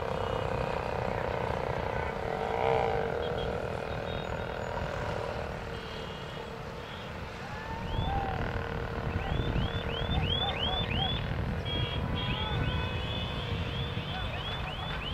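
Engines of a pack of motorcycles droning steadily. In the second half a run of quick, high rising-and-falling whistles repeats several times a second.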